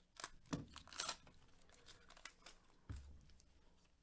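Glossy trading cards being shuffled through in gloved hands: a few faint, brief slides and taps of card against card.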